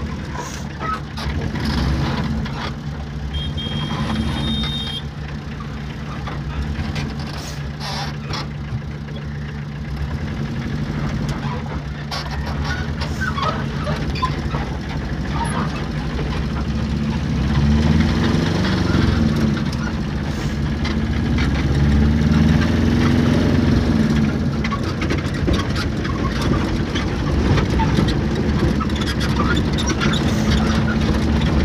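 Small vehicle's engine running while driving, heard from inside the cabin, with occasional clicks and rattles. The engine note rises and falls twice about two-thirds of the way through.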